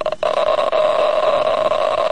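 Gamma radiation survey meter's audible counter sounding as a steady, dense buzz, held to uranium powder in an open hand: a very high count rate, the sample reading as very radioactive.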